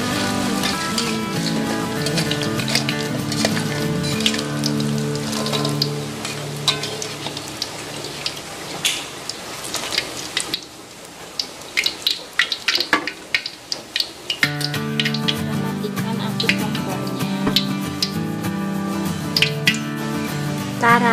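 Hot cooking oil sizzling with sharp crackles as fried sausage spring rolls are scooped out of a wok in a wire skimmer and drained, under background music. About halfway through, the music drops out for a few seconds and the crackling is heard on its own.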